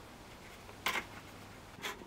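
Hands handling an insulated vent cover while pressing a taped magnet down onto it: a short, faint rub about a second in and another just before the end, with quiet room tone between.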